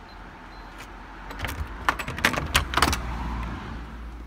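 Keys jangling, with a quick run of metallic clicks from the front door's lock and handle about halfway through as the door is opened.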